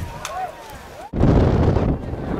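Faint voices, then an abrupt break about a second in, followed by loud wind buffeting the microphone.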